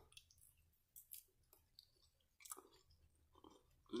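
Faint chewing of a mouthful of salad greens: a few short, irregular crunching clicks from the mouth.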